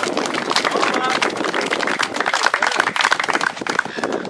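A small crowd applauding: a dense patter of hand claps that keeps up steadily, with voices mixed in.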